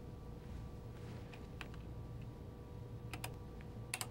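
Scattered faint clicks of buttons and keys being pressed on a film colour-grading control console, with a quick pair of clicks about three seconds in, over a steady electrical hum from the equipment.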